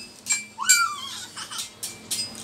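A run of light metallic clinks, each ringing with the same high tone, at uneven spacing. A short squeaky sound rises and falls about two thirds of a second in.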